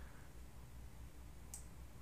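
A single computer mouse click about one and a half seconds in, over a faint low hum.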